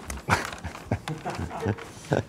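A man laughing: a string of short chuckles.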